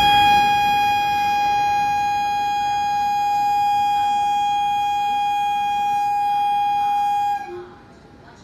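Electric locomotive's air horn sounding one long, steady high note for about seven and a half seconds, then cutting off suddenly.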